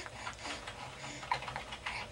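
Quiet scattered clicks and rustles, with a baby's faint soft coos about half a second and a second in.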